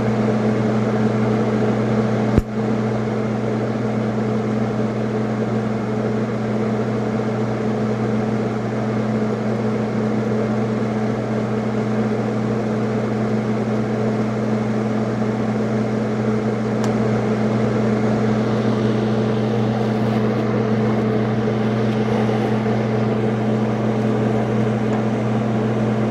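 TIG welding with a Lincoln TIG 200 welder: the welder and its cooling fan give a steady hum with a hiss above it, and one sharp click sounds about two and a half seconds in.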